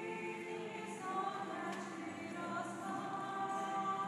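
A church choir singing unaccompanied, in slow, long-held chords that move to a new chord about a second in.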